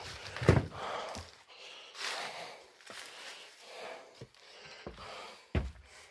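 Footsteps on loose boards and debris, with a person breathing hard in soft, noisy breaths about once a second. There is a sharp knock about half a second in and another near the end.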